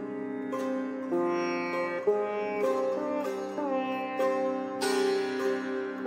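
Sitar playing a slow melodic line, one plucked note about every half second to a second over a steady drone, with some notes sliding in pitch.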